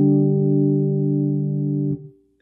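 Gibson Les Paul electric guitar through an amp: a chord, struck just before, rings on and fades slowly, then is damped sharply near the end.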